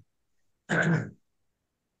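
A man clears his throat once, briefly, a little over half a second in.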